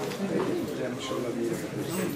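Quiet voices murmuring in a room, low and indistinct, with no single loud sound.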